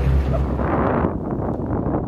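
Low, steady motorboat engine hum that gives way about half a second in to wind rushing and buffeting over the microphone.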